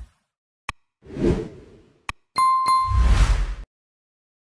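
Sound effects of an animated like-and-subscribe outro: a sharp click, a whoosh, another click, then two quick dings under a last whoosh that cuts off suddenly.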